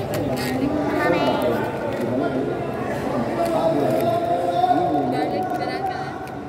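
Several people's voices talking and calling out over one another in a large indoor gym hall, with a few short sharp knocks.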